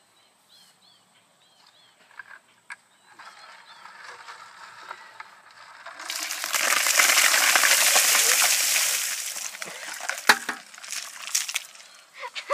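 A bucket of ice water poured over a seated person, a loud splashing rush lasting about three seconds that starts about six seconds in and fades out, followed by a few sharp knocks near the end.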